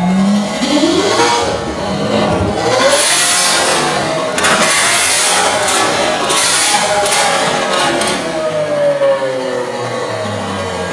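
Lamborghini Aventador V12 with an IPE exhaust revving while standing still. The revs climb in the first second and again shortly after, a string of sharp exhaust pops and cracks follows through the middle, and the engine winds down near the end.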